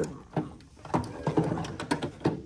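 A few separate plastic clicks and knocks as a white cap and fittings are handled inside a motorhome's exterior service compartment.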